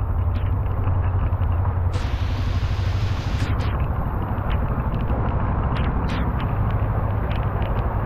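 Heavy storm rain pouring down, a dense steady hiss over a deep rumble, with scattered sharp ticks of drops striking close by.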